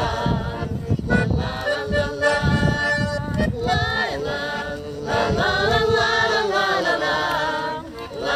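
A small group of women and men singing a song together in chorus, several voices in unison and harmony, phrase after phrase without a break.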